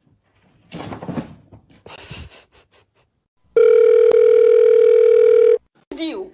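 Two short bursts of scuffling and knocking, then a loud steady electronic beep lasting about two seconds, one low tone with overtones, that cuts off suddenly.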